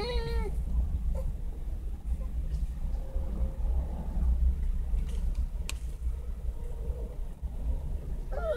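Steady low rumble inside a car, with a young child's high whining voice briefly at the start and a faint click near the six-second mark.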